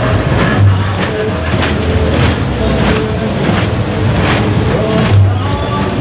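A small fairground train ride running on its track, with loud ride music over it: a steady beat about every three-quarters of a second over a bass line.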